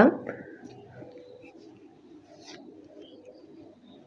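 A woman's voice breaks off at the very start. After that the room is quiet, with a faint, wavering low sound in the background and a few faint soft taps.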